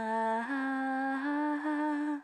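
A lone voice holding long, steady notes with no accompaniment, the pitch stepping up twice, as the closing phrase of a rock song.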